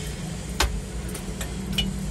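Tractor diesel engine idling with a steady low hum, with a few light clicks and knocks from handling in the cab.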